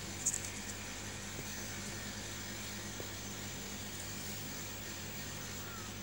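Steady low room hum and hiss, with a brief rustle just after the start and a faint click about three seconds in, as jumper wires are handled and pushed into a breadboard.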